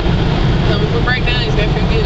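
Steady low rumble of engine and road noise inside a vehicle's cab at highway speed.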